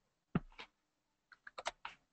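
Keystrokes on a computer keyboard, faint: two single key presses in the first second, then a quick run of about five near the end.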